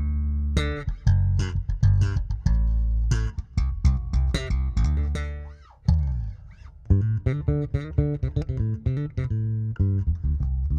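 Fibenare Global 5 five-string electric bass with a poplar burl top, played as a busy riff of quick plucked notes. A little over halfway through, the riff breaks off briefly while a note slides down in pitch and dies away. The riff then starts up again.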